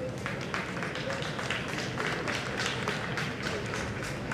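Scattered applause from a small audience: many separate hand claps in a quick, irregular patter.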